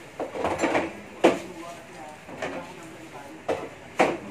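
A few sharp clacks typical of billiard balls striking, the loudest about a second in and two more near the end, over murmuring voices.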